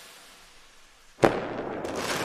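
Logo-reveal sound effect: a fading swoosh, then a sudden sharp boom just over a second in, followed by a sustained fizzing wash with small crackles like fireworks.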